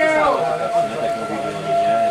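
Men shouting during a football match, one voice falling in pitch at the start, with a steady, even tone held from about half a second in to the end.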